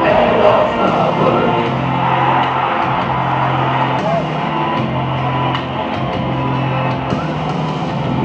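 Rock music played loudly over a football stadium's public address system, with a steady bass line that changes note about every second and crowd voices underneath.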